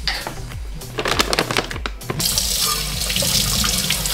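Tap water running into a stainless steel bowl in a kitchen sink. The water starts about halfway through and runs steadily, after a few light clicks and knocks; background music plays underneath.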